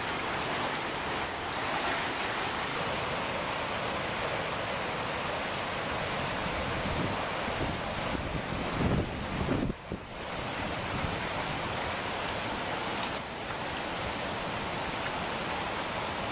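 Swollen river in flood rushing steadily past. A brief rumble of wind on the microphone comes about nine seconds in.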